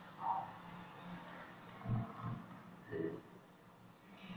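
A man's voice in a few short, quiet utterances with pauses between them, over a steady low hum and hiss of an old recording.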